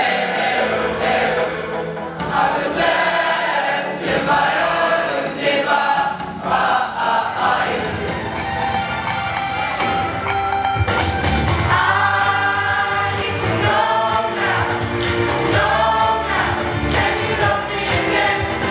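A mixed choir of teenage voices singing a song together. The sound fills out with a deeper bass part about eleven seconds in.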